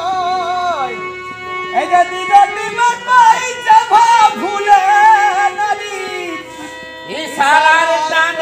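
Purulia Jhumur folk singing: a man's voice holds a long, wavering note that falls away about a second in, then sings a new ornamented phrase over a steady harmonium drone, with a few hand-drum strokes. Another sung phrase begins near the end.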